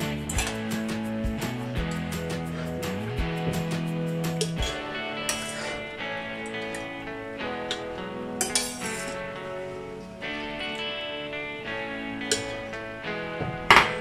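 Background music, with a metal spoon clinking against a saucepan and blender jar as softened chiles are scooped into the blender: a few sharp clinks, the loudest near the end.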